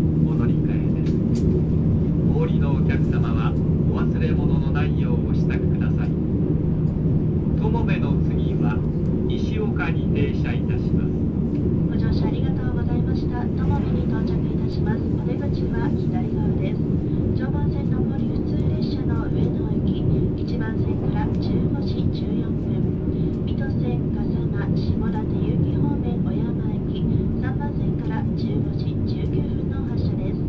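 Steady low rumble of an E657-series electric train running at speed, heard inside the passenger car, with a low hum that drops away about nine seconds in. Faint voices of people talking run underneath.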